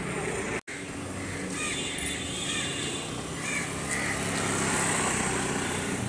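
Honda Activa motor scooter's small single-cylinder engine running as it rides off, a steady low hum that grows slightly louder over a few seconds.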